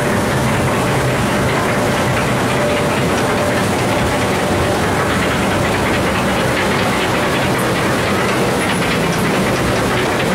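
Log flume ride running: a steady mechanical rattle and rumble from the ride's boat and track, unbroken throughout.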